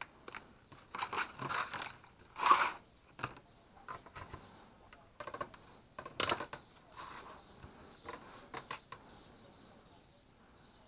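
Hand-handling noises on a workbench: scattered clicks, knocks and rustles of plastic and test leads, with a louder knock about two and a half seconds in and a plastic clunk about six seconds in as a cordless-drill battery pack is pressed onto its Bosch charger.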